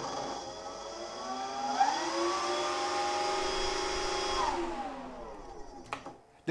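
Twin brushless electric motors of a Hangar 9 Twin Otter RC model spinning their propellers in reverse: a whine that rises about two seconds in, holds steady, then winds down and fades near the end.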